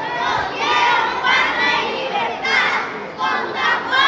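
A group of schoolchildren's voices declaiming loudly together in short shouted phrases with brief pauses between them.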